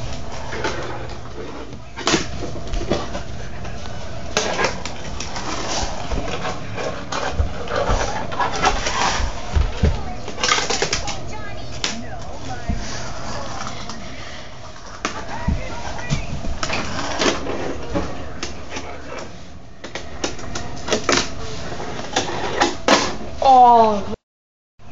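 Fingerboard clicking and clattering on a wooden floor, with many sharp taps and knocks, over indistinct voices.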